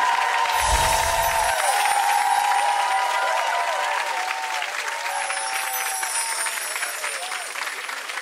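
Studio audience applauding over music, the clapping easing off slightly over the last few seconds.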